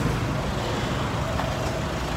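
Steady roadside traffic noise from passing cars and trucks, with a faint short tone about a second and a half in.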